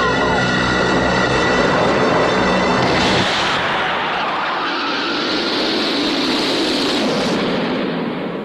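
Trailer soundtrack: a sustained musical drone of held tones that gives way about three seconds in to a loud, steady rushing roar. The roar thins out near the end and starts to fade.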